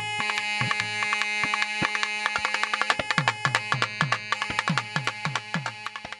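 Thavil drums playing a fast, dense rhythm over a steady drone, the deep strokes sliding down in pitch about three times a second. The drumming fades out near the end.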